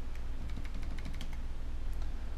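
Computer keyboard typing: a quick run of light key clicks as a number is keyed into a spreadsheet cell, over a steady low hum.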